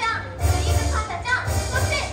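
Children's stage-show song with a bass beat and high voices singing over it, and young children's voices in the audience.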